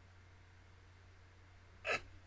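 A single short, sharp breath sound from a person close to the microphone, like a hiccup, near the end, over a low steady hum of room tone.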